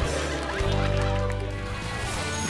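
Studio audience whooping and cheering over soft background music.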